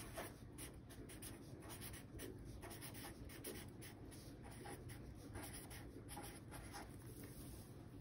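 Crayola felt-tip marker writing words on a sheet of paper on a wooden table: a quick run of short, faint strokes.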